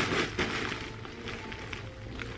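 Plastic mailer bag crinkling and crackling in irregular bursts as it is gripped and handled.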